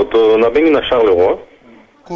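Speech only: a caller's voice heard over a telephone line, thin and muffled in the top end, stopping about a second and a half in.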